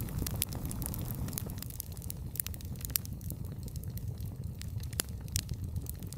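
AI-generated audio of a campfire crackling: a steady low rumble of burning logs with frequent sharp pops and snaps scattered throughout.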